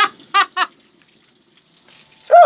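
Three short, high-pitched laughs in quick succession, then only faint room noise.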